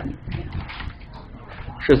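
Faint clicking of computer keyboard typing while a line of code is entered, with a spoken word starting at the very end.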